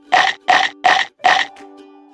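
Four quick, loud cartoon munching sound effects in a row over about a second and a half, the comic 'eating' noise for the food vanishing from the bowl. Light ukulele music plays underneath.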